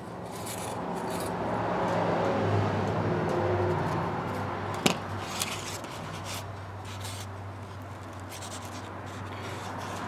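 Rubbing of a fishing-rod blank section being slid into a larger blank at an epoxied joint. A single sharp click comes about five seconds in, over a steady low hum.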